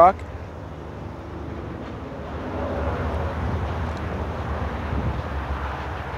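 Road traffic in the background: a steady low rumble and hiss that swells a little around the middle.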